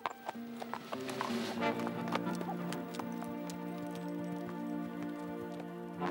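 Hoofbeats of a ridden horse, a run of irregular clip-clops, over an orchestral film score of held notes.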